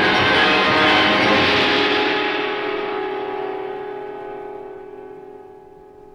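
Opera orchestra with bells ringing, holding a loud chord that dies away over several seconds until one held note remains.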